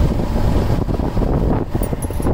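Wind buffeting the microphone on a moving motorbike, a steady loud rumble.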